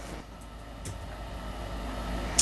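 Room tone: a steady low hum under a faint even hiss, with two faint ticks in the first second.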